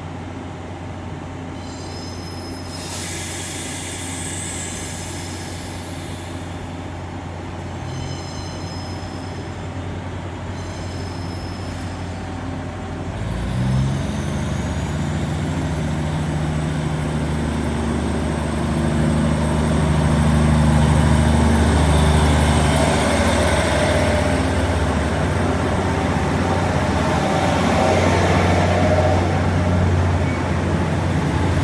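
Tze-Chiang Express diesel multiple unit idling at the platform, then its engines rev up just before halfway as it pulls away, growing louder as the cars roll past.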